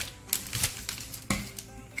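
Scissors snipping through a plastic courier satchel: a few sharp separate cuts, with the plastic crinkling in the hands.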